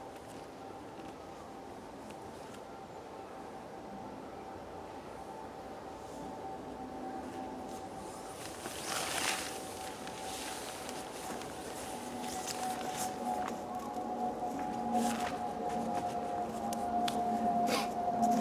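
Tarp fabric rustling as a person pushes the shelter's door flap open and climbs out about halfway through, then footsteps and rustling on dry leaf litter. A steady droning hum runs underneath, slowly getting louder.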